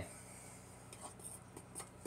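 Faint scraping and light ticking of a fork stirring batter against the sides of a small ceramic bowl.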